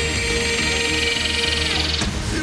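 Upbeat worship song sung by a children's choir over band accompaniment, with one long held note that ends just before the close.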